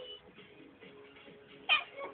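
A domestic cat gives one short meow near the end, over faint background music.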